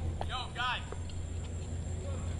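A short, distant shout from a man's voice about half a second in, over a steady low hum.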